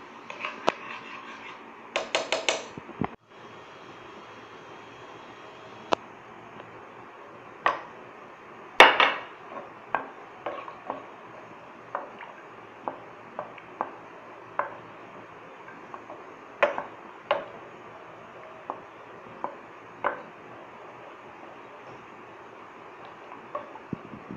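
Spoon and spatula knocking and scraping against a pan as a thick sauce is stirred: scattered sharp clicks and knocks. There is a quick run of rattling clicks about two seconds in and the loudest knock about nine seconds in.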